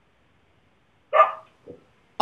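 A dog barks once, a short sharp bark about a second in, followed by a faint, softer sound.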